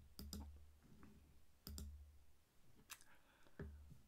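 A few faint computer mouse clicks: two quick double-clicks in the first two seconds, then two single clicks, over quiet room tone.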